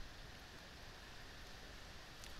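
Faint steady background hiss of room tone and microphone noise, with no distinct sound event.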